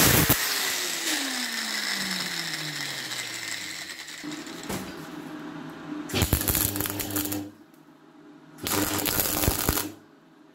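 An angle grinder with a cut-off disc stops cutting and spins down, its pitch falling over about four seconds. Then a MIG welder's arc crackles in two bursts, one about six seconds in lasting about a second and a half and another near the end, over a steady hum.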